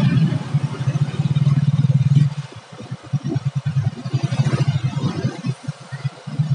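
Road traffic on a busy street: a steady low rumble for about two seconds, then choppy, uneven rumbling as the camera moves along among cars and motorcycles.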